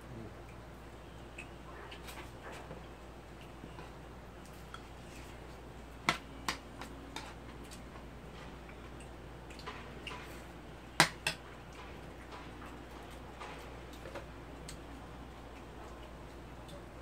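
Eating at a table: scattered sharp clicks of a metal fork against a bowl and dishes, with a louder pair of clicks about six seconds in and the loudest pair about eleven seconds in, over a steady low hum.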